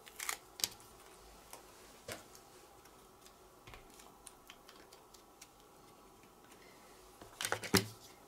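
Light clicks and taps of a clear acrylic stamping block and clear stamps being handled on a craft mat: a few near the start, one about two seconds in, and a quick run of clicks near the end.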